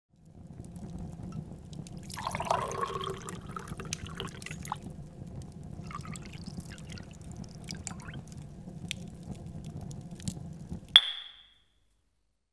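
Water trickling and dripping over a low steady rumble, with a short falling gurgle a couple of seconds in. Near the end a single sharp click with a brief ring, after which the sound cuts off.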